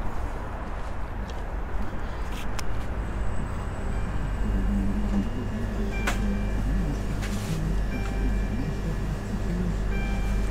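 Background music playing in a shop over a steady low rumble, with a single sharp click about six seconds in.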